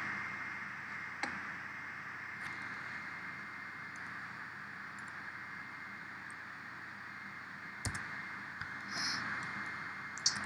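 Quiet room tone with a steady hiss, broken by a few faint computer-mouse clicks: one about a second in, another a second later, and a sharper one near the end, followed by a brief soft hiss.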